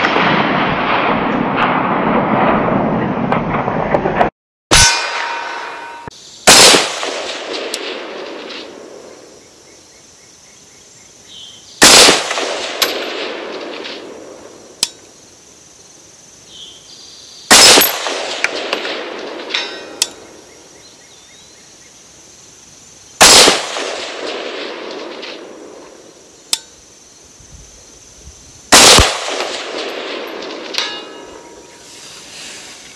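Bear Creek Arsenal AR-15 rifle in 6.5 Grendel fired five times, a shot about every five and a half seconds. Each shot is followed by a long rolling echo that fades over several seconds. A faint sharp click comes a couple of seconds after several of the shots.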